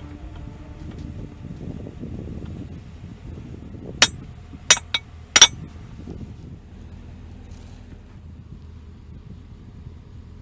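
Four sharp metallic clinks close together near the middle, a metal hand tool striking metal fittings, over a low steady outdoor rumble.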